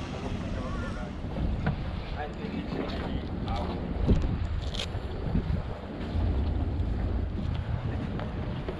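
Wind rumbling on an action camera's microphone, with a few light clicks and knocks.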